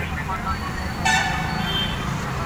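Street traffic noise with a vehicle horn sounding once, a steady held note of about a second starting about a second in.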